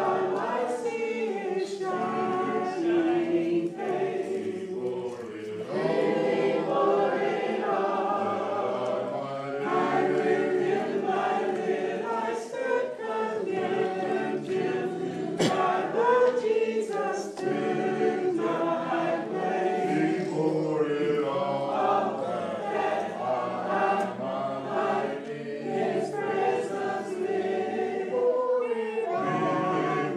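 A church congregation singing a hymn a cappella, many voices together in harmony, phrase after phrase with short breaks between lines.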